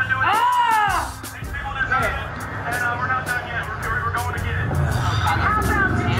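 Voices reacting just after a shot of whiskey: a loud rising-and-falling vocal exclamation in the first second, then mumbled talk, over background music.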